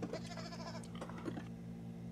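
Donkey braying and horse neighing played back from a TV episode's soundtrack, faint, in wavering calls over the first second and a half.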